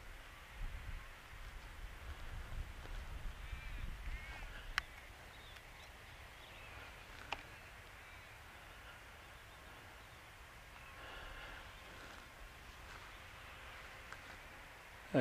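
Faint bird calls: a few short arched calls about four seconds in and again around eleven seconds in, over a low rumble in the first few seconds, with two sharp clicks in between.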